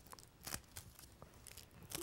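A crumpled ball of aluminium foil is dabbed and pressed onto a soft clay disc to texture it, giving a few faint crinkles and light taps.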